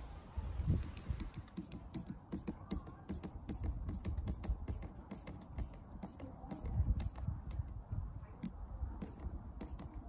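Flat-head screwdriver turning the worm screw of a jubilee clip (worm-drive hose clip) to tighten it onto a rubber hose: a rapid string of small, sharp clicks, several a second, as the screw threads ride over the slots in the band.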